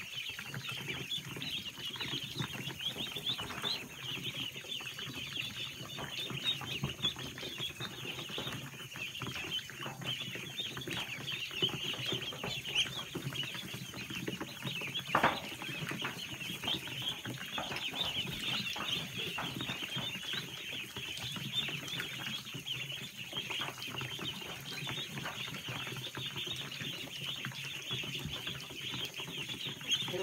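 A crowd of Khaki Campbell ducklings peeping without a break in a dense, high-pitched chorus over a faint low hum, with one sharp knock about halfway through.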